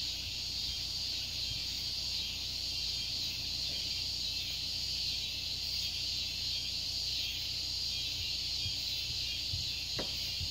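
Evening chorus of insects: a steady, unbroken high-pitched drone, with a faint low rumble underneath.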